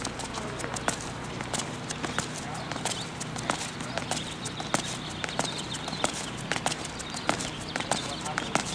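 Tennis shoes stepping and scuffing quickly on a hard court during a side-to-side crossover footwork drill: a rapid, irregular run of sharp taps, several a second.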